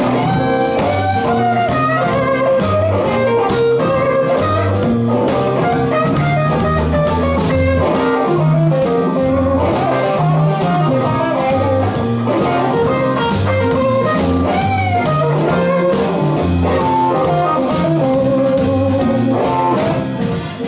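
Live blues band: an electric guitar plays lead lines with bent notes over bass guitar and a drum kit.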